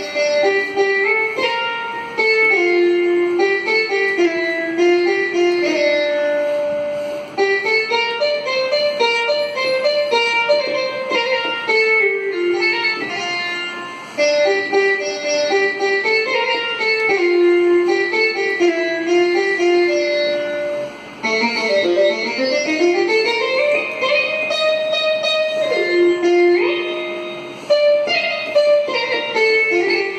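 Sampled veena from a software instrument played from a keyboard: a single melodic line of plucked notes, with a slow downward then upward pitch glide about two-thirds of the way through.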